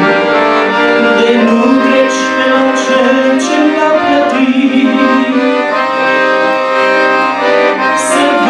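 Empire piano accordion playing a slow hymn tune, with held chords under a melody that moves every second or so.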